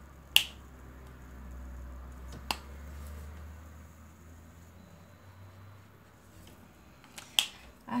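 Sharp plastic clicks of an alcohol marker's cap being pulled off and snapped back on: a loud one about half a second in, a smaller one around two and a half seconds, and two more near the end, over a faint low hum.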